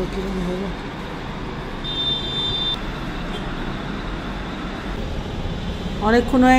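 Steady road traffic noise from the busy street below, with a brief high-pitched beep about two seconds in.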